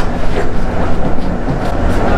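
Upholstery fabric cover rubbing and rustling as it is pulled and smoothed by hand over a tightly fitted foam mattress, with irregular scuffs over a steady low rumble.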